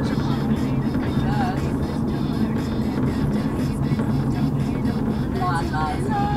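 Steady engine and road rumble inside a moving car's cabin, with music from the car radio playing underneath.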